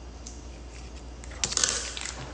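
Kitchen scissors snipping open a plastic food pouch, with a short burst of plastic crinkling and clicks about one and a half seconds in, over a faint low hum.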